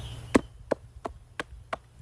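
A hand knocking on a coconut palm trunk: six dull wooden knocks, about three a second, the first loudest and the rest fading.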